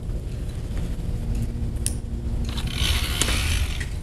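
goBILDA motor spinning the two counter-rotating friction wheels of a small paper-airplane launcher, a low steady mechanical hum. In the second half comes a louder hissing scrape lasting about a second and a half as the paper airplane is driven through the tight gap between the wheels.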